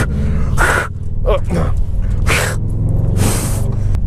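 Steady low drone of a 2016 Subaru WRX STI's turbocharged flat-four engine and muffler-deleted exhaust, heard from inside the cabin while driving. Three short, sharp breaths come from the driver over it.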